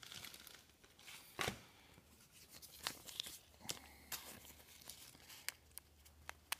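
Thin plastic card sleeve being handled as a trading card is slid into it: faint, scattered crinkles and clicks, the sharpest about a second and a half in and others near three and near four seconds.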